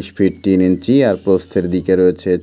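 A man's voice talking continuously, in quick syllables.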